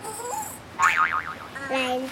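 Cartoon 'boing' sound effect: a springy tone that wobbles quickly up and down in pitch about a second in. Short squeaky character vocalizations come before and after it.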